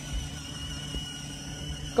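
Battery-powered ride-on toy car's electric drive motors and gearboxes running as it rolls over asphalt, a steady low hum with a faint high whine.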